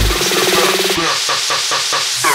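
Electronic dance music breakdown: the kick drum drops out, a held synth chord gives way after about a second to a rising hiss sweep with short repeated synth notes, building toward the next drop.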